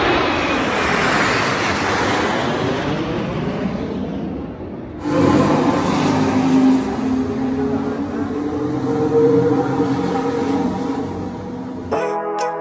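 A formation of jet aircraft flying over, heard as a loud rushing jet roar that fades away over about five seconds. Then, after an abrupt change, a steady mechanical hum with a few held tones.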